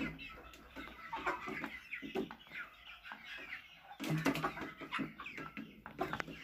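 A flock of 48-day-old Sasso chickens clucking and calling in many short, irregular notes, with scattered sharp taps. The calling is busiest and loudest about four seconds in.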